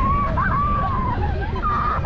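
Low rumble of a Mater's Junkyard Jamboree ride trailer rolling and swinging around the course, with a high wavering squeal-like tone over it.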